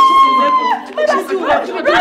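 A woman's long, high-pitched scream, held at a steady pitch and breaking off under a second in. Then several voices cry out and talk over one another.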